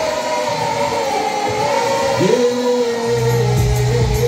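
Live Malagasy pop music played loud through a concert PA, with held sung notes. The bass drops out at first, a note slides up a little past the middle, and the bass line comes back near the end.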